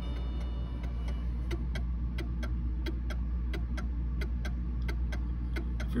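Mantle clock escapement ticking out of beat, about four ticks a second with uneven spacing: a 'tick tick tick tick' rather than an even tick-tock. This is the sign of a pendulum getting a much bigger impulse from the pallet on one side than on the other, which the clockmaker calls 'way out of beat'.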